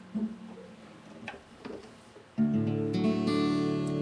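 A few faint handling knocks, then about two and a half seconds in an acoustic guitar tuned to open D is strummed on its open strings, and the chord rings on loudly.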